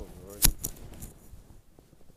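A man's wordless voice trailing off, then a sharp click about half a second in, followed by a few fainter clicks and light ticking.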